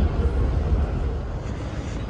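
Escalator running with a steady low rumble, under the general noise of an airport terminal hall.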